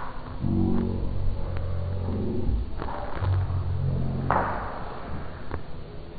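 A person's voice making two drawn-out, wordless sounds, each lasting a second or two, with a breathy hiss between them and a few faint clicks.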